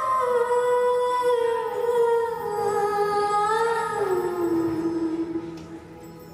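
Music: one slow, sustained melody line that slides gradually lower over several seconds and fades away near the end.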